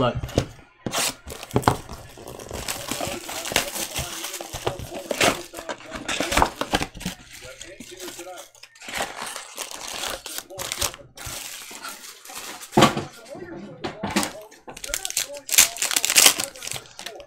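Plastic wrap and foil trading-card packs from a Panini Select basketball box being torn open and crumpled by hand: irregular rustling with sharp rips, the loudest one near the end.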